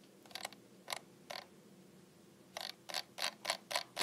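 Faint, short mechanical clicks: three spaced clicks in the first second and a half, then a quick run of about eight clicks, roughly six a second, near the end.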